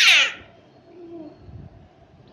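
A baby's high-pitched squeal at the very start, sliding down in pitch and dying away within about half a second, followed by faint low sounds.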